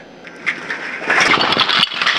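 Plastic pill bottles and a glass jar clattering onto a hard floor as they are dumped out, a dense rattle that starts about half a second in, grows louder and breaks off briefly near the end.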